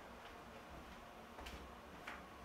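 Near-quiet room with a few faint, short clicks; the clearest comes about a second and a half in.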